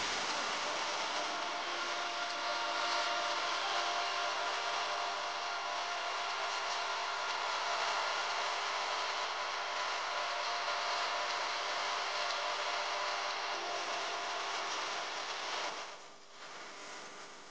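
Sliced onions and green chillies sizzling steadily in hot oil in an aluminium pressure-cooker pot. The sizzle fades near the end.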